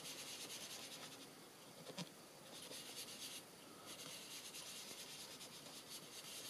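Faint soft rubbing of an ink blending brush swirled over cardstock, coming in short spells, with a light tap about two seconds in.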